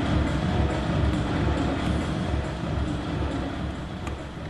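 Steady low rumble of a large indoor sports hall: crowd murmur and air-handling noise, with no distinct hits or voices standing out.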